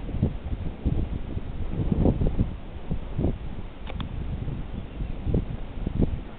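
Gusty wind buffeting the camera microphone in uneven low gusts as a storm front moves over.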